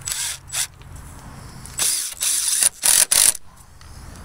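A power drill driving a long screw into a 2x4 in short trigger bursts: two brief runs at the start, then four longer runs from about two seconds in, the last ones the loudest.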